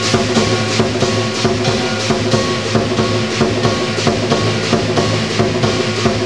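Lion dance percussion band: a big Chinese drum driving a fast, steady beat, with clashing cymbals and gong ringing over it several times a second.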